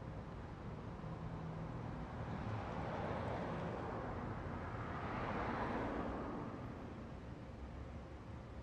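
A car driving past on the street: its tyre and engine noise swells over a few seconds, loudest about five to six seconds in, then fades away.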